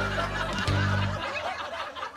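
A woman and a man laughing over background music. The music's low bass notes stop a little over a second in, and the laughter carries on.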